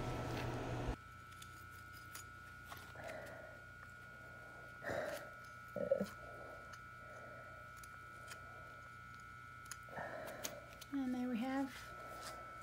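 Wet diamond glass saw running, cutting off suddenly about a second in. Then quiet, small taps and clicks of cut glass pieces being handled on a workbench, over a faint steady tone, with a voice near the end.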